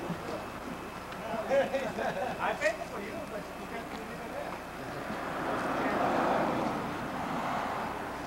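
Indistinct talk among a group of people, with a brief burst of voices about two seconds in, then a broad noise that swells and fades about five to seven seconds in.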